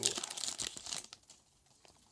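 Foil trading-card pack wrapper being torn open and crinkled by hand, dying away about a second in.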